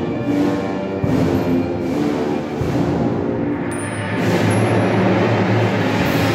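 Procession band playing a slow funeral march: sustained brass chords over a deep drum beat about every second and a half.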